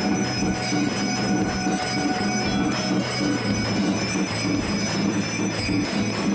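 Temple bells and gongs ringing without pause during a lamp-waving aarti, a dense metallic clangour with a regular low beat about twice a second.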